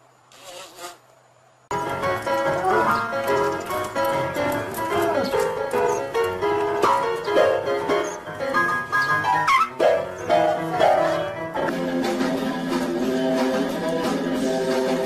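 Piano being played, a run of separate notes that begins suddenly about two seconds in after a short quiet stretch. Near the end it gives way to different music.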